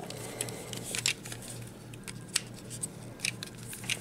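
Light clicks and taps of small plastic toy parts being handled as a replacement knee piece is fitted onto a Transformers figure's leg: scattered sharp ticks, a few louder ones about a second in, in the middle and near the end, over a faint steady hum.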